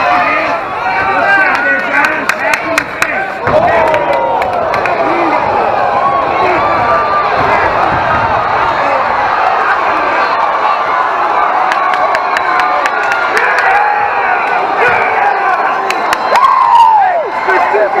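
MMA fight crowd shouting and cheering, many voices yelling over one another, with scattered sharp clicks; the yelling peaks about a second before the end.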